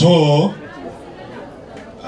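A man's voice through a microphone and PA system: a drawn-out spoken syllable in the first half second, then a pause with faint background chatter.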